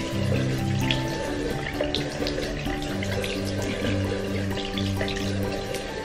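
Water splashing at a bathroom sink as a face is rinsed with the hands, with short splashes scattered through, under bright background music.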